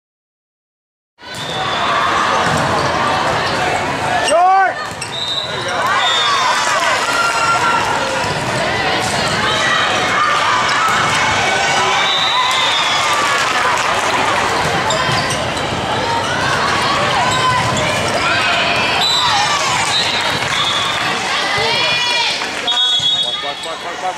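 Silent for about the first second, then the sound of an indoor volleyball match: sneakers squeaking on the court, the ball being hit, and players' and spectators' voices and shouts echoing in a gym.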